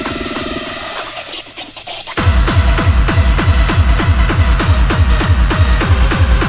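Pitched-up hardcore techno track. The beat thins out into a short, quieter break about a second in, then a fast kick drum comes back in hard a little after two seconds, each hit falling in pitch, in a quick steady rhythm.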